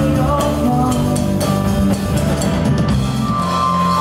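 Live rock band playing loudly, with drum kit, keyboard and electric guitars.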